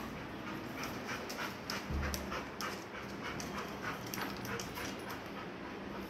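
A dog panting in quick, even breaths, about four a second.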